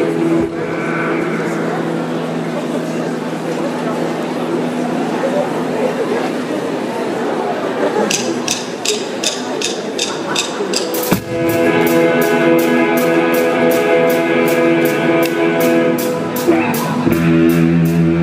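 Live indie rock band starting a song: electric guitar chords ring under a noisy wash, a steady ticking beat comes in about halfway through, and the full band with drum kit and electric guitar enters a few seconds later.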